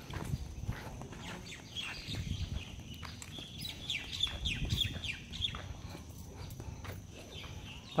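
Birds chirping: a run of short, falling calls, thickest in the middle few seconds, over a low rumble.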